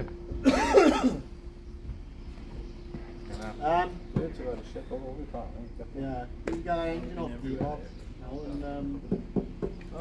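Men's voices talking and laughing, with a loud shout or laugh about half a second in.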